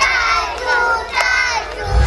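A group of young children shouting and cheering together, many high voices at once. A loud low rush swells in near the end.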